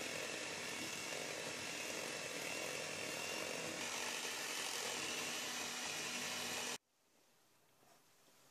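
AEG electric hand mixer running steadily at speed, its beaters whipping mascarpone cream in a stainless steel bowl. The motor cuts off suddenly near the end.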